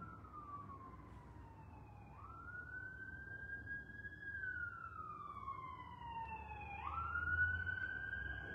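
Emergency vehicle siren in its wail mode. Each cycle is a quick rise in pitch followed by a long, slow fall, and about two cycles are heard.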